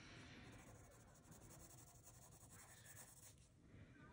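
Faint scratching of a colored pencil shading on paper, barely above room tone.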